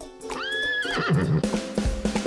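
A horse whinny sound effect, lasting about half a second: it rises, holds, then wavers at its end. About a second in, upbeat music with a bass line comes in.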